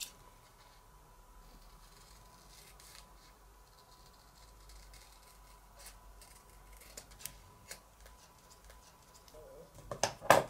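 Scissors snipping through thin masking paper, a run of faint quiet cuts with a few sharper clicks of the blades between about six and eight seconds in.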